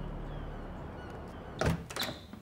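A door's handle and latch knocking twice in quick succession near the end, as fading music dies away.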